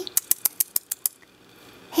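A quick, even run of about seven light, sharp clicks, some seven a second, that stop about a second in.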